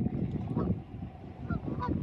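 Canada geese honking about three times, short calls over a heavy low rumble of wind buffeting the microphone.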